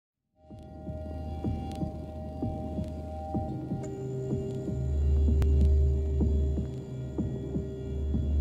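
Electronic ambient drone: a deep low hum with a few sustained higher tones and scattered small clicks and ticks. It comes in just after the start and swells louder about five seconds in.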